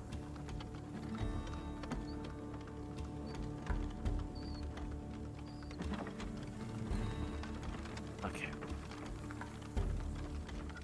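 Ambient background music from a tabletop soundscape track, sustained held tones, with soft clicks now and then.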